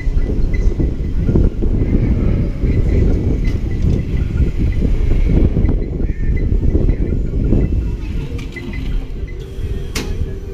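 Wind buffeting the microphone in a loud, uneven low rumble, easing a little near the end.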